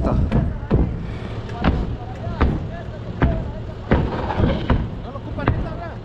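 A run of sharp knocks, one roughly every second, as a freshly cut sheet is kicked and knocked into place to make it fit.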